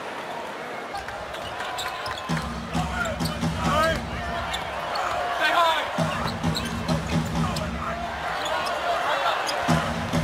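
Live NBA arena game sound: a basketball being dribbled on the hardwood court, sneakers squeaking, and steady crowd noise.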